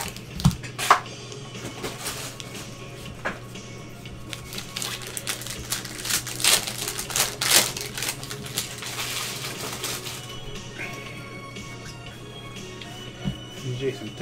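Foil trading-card pack torn open and its wrapper crinkled in gloved hands, the crackling loudest about six to eight seconds in and fading after about ten seconds, with background music.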